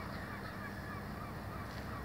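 Faint birds calling: a quick run of short, honk-like calls over a low steady rumble.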